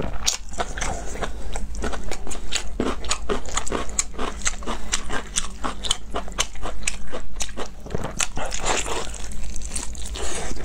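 Close-miked chewing and biting of honeycomb beef tripe: a dense run of wet, crunchy clicks, several a second.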